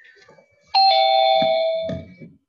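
Electronic two-note chime, a higher note stepping straight down to a lower one, held for about a second before it cuts off.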